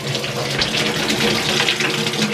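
Tap water running steadily from a wall faucet and splashing over a wet cat's fur into a steel sink as the soap is rinsed off.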